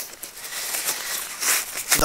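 Nylon backpack fabric rustling and scraping as a padded hip belt is slid back into the pack body.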